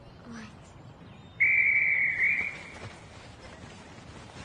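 A referee's whistle blown once: a single loud, steady high tone held for about a second, starting about a second and a half in.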